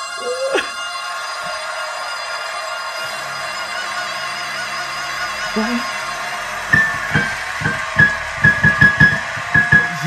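Male vocalist singing at the top of his range over sustained orchestral backing, holding a long high note, then hitting short repeated notes up around G6 in the last few seconds. A run of loud low hits comes in over those final high notes.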